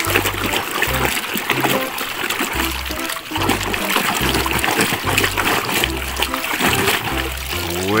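A hand sloshing and splashing through thick green slimy water while scrubbing a toy gun clean, with a dense run of small wet splats. Background music with a regular bass beat plays underneath.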